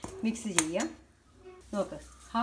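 A steel spoon stirring and scraping frying shredded ginger in a metal pan, with one sharp clink of spoon on pan about half a second in.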